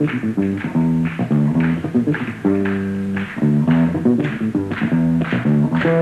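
Electric bass guitar playing a syncopated funk bass riff on its own, the bass part of the tune, with sharp clicks keeping time about twice a second.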